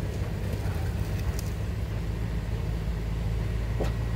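Steady low rumble of a vehicle engine idling.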